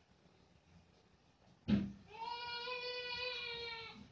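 A short knock, then a voice holding one long, steady note for nearly two seconds, sung or drawn out without words.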